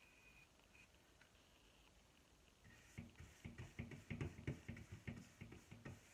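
Near silence at first. Then, about halfway in, a paintbrush starts scrubbing thick black chalk paint onto a wooden cabinet door in short quick strokes, about four a second.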